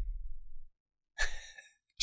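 A man's short breath into a close microphone, a little over a second in, during a pause in talk. A faint low hum comes just before it; otherwise the track is silent.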